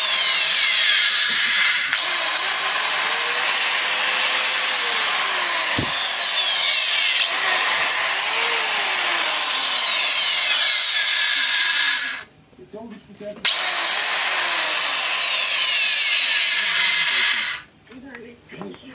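DeWalt DWC410 handheld diamond tile saw's 1300 W motor running free with no cut, a loud steady whine. It is switched off about twelve seconds in, started again a second and a half later, and switched off again near the end.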